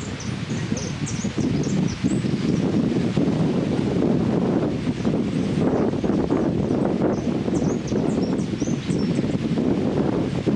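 Caged jilguero (hooded siskin) singing short runs of high, rapid twittering notes, once in the first two seconds and again near the end. Steady louder wind and rustling noise runs underneath.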